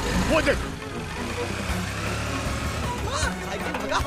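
Motor scooter and motorcycle engines running as they ride along, under background music with held tones. Brief shouted voices come about half a second in and again near the end.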